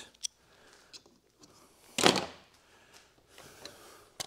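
Hand-handling noise of a plastic tape measure case and a screwdriver: a few small clicks and knocks, with one louder, brief clatter about halfway through.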